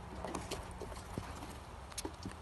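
Mink's claws tapping on wooden deck boards as it walks, a few light, irregular clicks.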